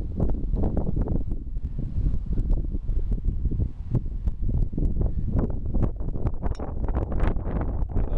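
Wind buffeting the microphone: a loud low rumble that rises and falls unevenly in gusts.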